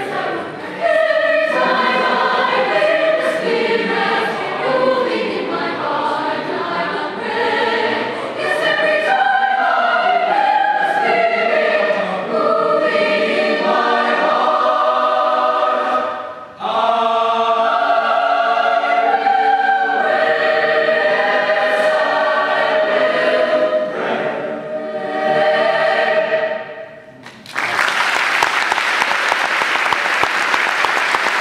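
Mixed choir of women's and men's voices singing. The piece ends about 27 seconds in and applause breaks out.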